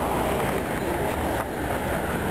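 Steady outdoor city street noise with a low rumble, typical of traffic.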